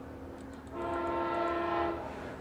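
A horn sounding one steady chord of several tones for about a second, starting a little before the middle, quieter than the voice around it.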